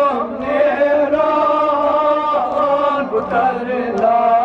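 Male voices chanting a Kashmiri noha, a Shia mourning lament, in long held and gliding lines, amplified through microphones.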